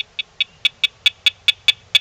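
Sound box wired to a Dogtra 200 Gold e-collar giving a rapid run of short, high beeps, about five a second. Each beep is one electric 'nick' stimulation made audible, hit over and over while the intensity dial is turned up.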